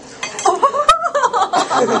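Wooden chopsticks clacking and scraping against a ceramic plate as two players scramble for a morsel of food, with one sharp click about a second in. Excited, high-pitched laughter runs over it.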